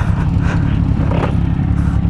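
Motorcycle engine idling steadily, close to the microphone.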